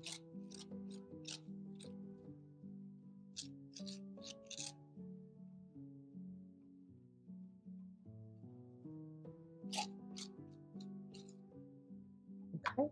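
Quiet background music with slow, held notes, over short scraping strokes of a metal grapefruit spoon scooping the seeds and stringy pulp out of a halved spaghetti squash. The strokes come in clusters: near the start, around four seconds in, and again around ten seconds.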